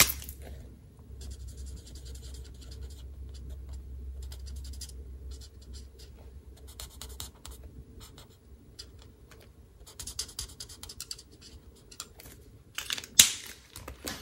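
Alcohol-ink blending marker nib scratching across cardstock in many short, quick strokes as a stamped image is coloured in. A sharp click comes near the end.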